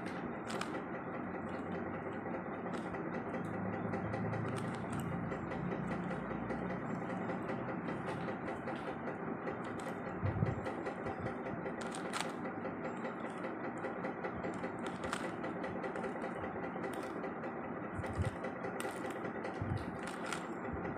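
Plastic windmill cube puzzle being turned by hand, its layers clicking and clacking irregularly over a steady background hum. There are a few low thumps from handling, about halfway through and near the end.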